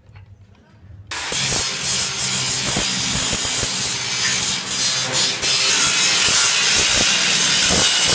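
Makita angle grinder's disc grinding into a steel plate, a loud steady grinding screech with the motor's hum beneath it, starting suddenly about a second in.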